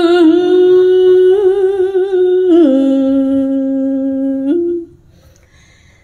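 A woman's voice singing Khmer smot chant into a microphone: a long held note with wavering vibrato that steps down to a lower held note about two and a half seconds in, then breaks off near five seconds in.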